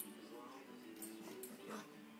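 A dog whimpering faintly, two short rising whines, with a few small clicks over a steady low background tone.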